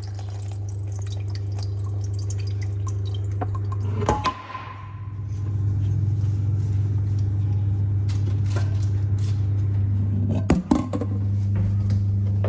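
A steady low hum under a stainless steel pot being handled: a loud metallic clank with a brief ring about four seconds in, and a couple of sharp knocks near the end.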